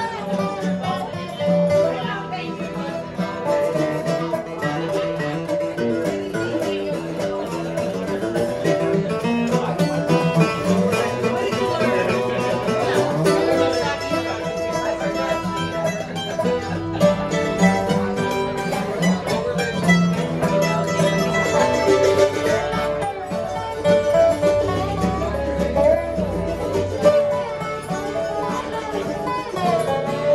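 Acoustic bluegrass instrumental on mandolin, guitar and dobro: fast picked melody over steady guitar rhythm, playing without a break.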